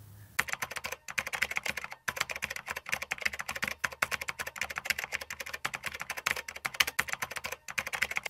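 Keyboard typing sound effect, a fast, dense run of key clicks that starts about half a second in and carries on almost to the end, as the text of a title card is typed out on screen.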